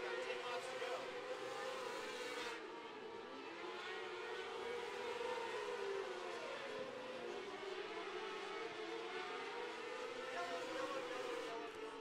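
A pack of 600cc micro sprint cars lapping a dirt oval: several high-revving motorcycle-type engines whining together, fairly quiet. Their pitches rise and fall out of step as the cars brake into and power out of the turns.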